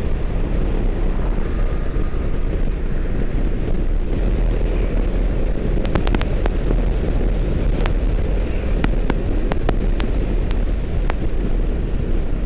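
Motorcycle ridden at highway speed: wind buffeting the microphone over a steady, deep rumble of engine and tyres. A scatter of sharp ticks comes in the second half.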